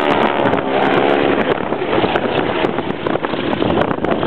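Boeing Stearman biplanes' radial engines droning together overhead in formation, the pitch bending as they pass. Wind buffets the microphone throughout.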